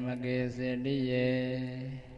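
A man's voice chanting on one steady, held pitch with slowly changing vowels, stopping at the end.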